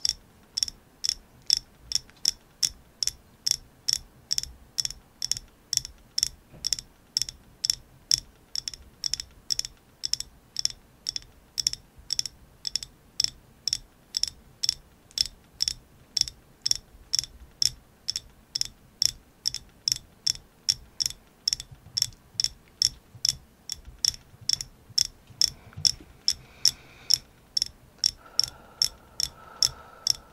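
Long fingernails tapping on a hard, hand-held painted object: ASMR tapping. The taps are sharp, crisp clicks at an even pace of about two and a half a second.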